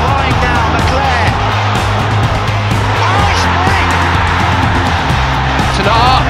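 Rock-style music with a voice over it.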